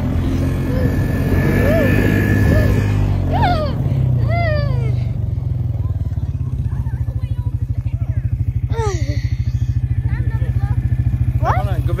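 ATV engine running as it tows a plastic sled over snow, easing to a slow, even putter about halfway through. A voice calls out several times.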